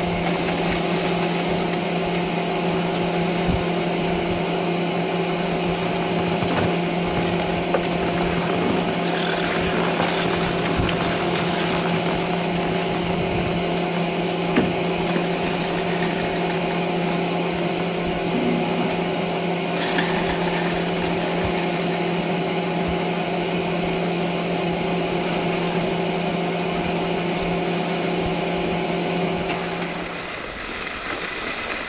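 Old Doppelmayr drag lift's station machinery running: a steady hum with several held tones from the drive and the turning bull wheel, with a few faint clicks.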